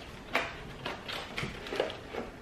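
Small parts packaging being handled: a few short clicks and crinkles of a plastic bag and a small cardboard box.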